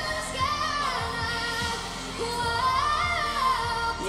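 A young girl singing a pop ballad over a backing track, holding long notes that slide up in pitch.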